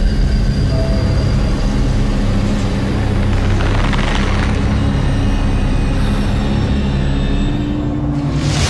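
Horror film score: a loud, steady, low rumbling drone with faint held tones over it.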